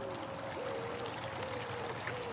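Water trickling from a tapped freshwater spring, under faint background music: a single held note that slides up and restarts about once a second.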